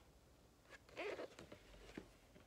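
Picture book being handled as a page is turned: a short papery rustle about a second in, with a few light clicks and taps.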